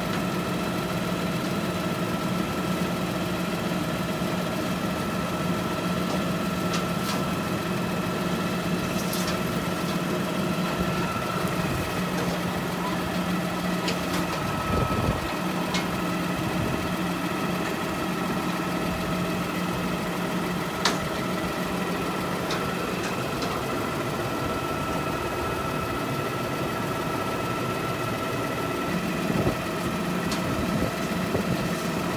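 A CNG garbage truck's engine idling steadily, with a few scattered sharp clicks and knocks.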